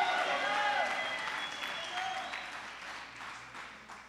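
Congregation applauding, with a voice or two calling out in the first couple of seconds; the clapping gradually dies away.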